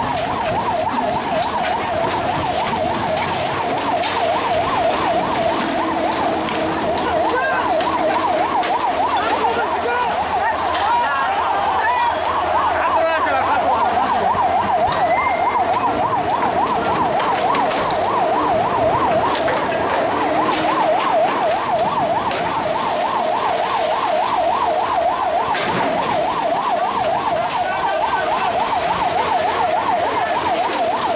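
Emergency vehicle siren warbling fast and steadily, its pitch swinging up and down several times a second, with scattered sharp cracks underneath.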